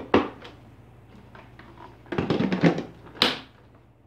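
Hollow plastic knocks and clatter as the dust container of an Electrolux UltraFlex canister vacuum is fitted back into the machine, ending in one sharp click a little after three seconds in as it snaps into place.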